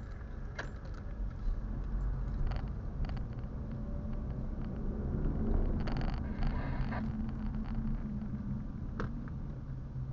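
Car's engine and road noise heard from inside the cabin, a steady low rumble as the car slows in city traffic, with a few short sharp clicks or rattles from the interior.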